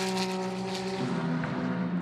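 GT race car engine holding a steady note, which steps down to a lower steady note about a second in.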